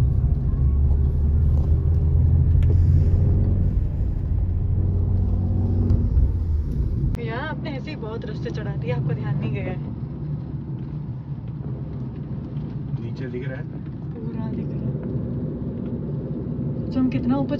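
Car cabin rumble from engine and road, with a steady low drone, for about seven seconds. Then it cuts off abruptly to quieter cabin noise, with people talking now and then.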